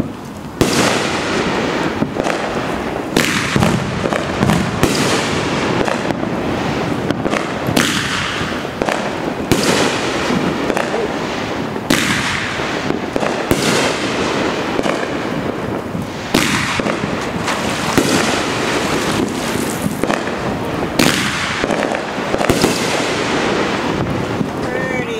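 Aerial firework shells bursting overhead in quick succession, roughly one sharp report a second, the bursts running into one another.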